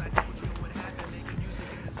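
Background music playing softly, with a single sharp click a moment in.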